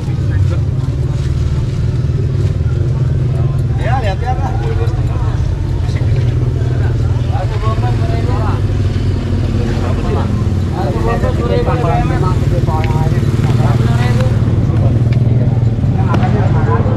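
A steady low engine rumble, like nearby motor traffic, runs throughout, with scattered snatches of voices over it.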